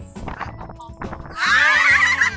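A woman's high-pitched laughter starts about one and a half seconds in and is the loudest sound, over steady background music.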